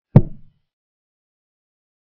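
Chess software's move sound effect: one short, low, wooden knock as a knight is played on the board.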